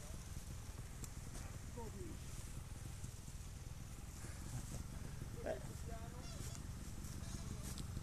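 Trials motorcycle engine idling low and steady while the bike is walked uphill, with faint scuffs of footsteps in dry leaves.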